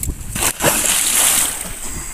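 A large tuna thrown back overboard hitting the sea: a sudden heavy splash about half a second in, churning water that fades over about a second.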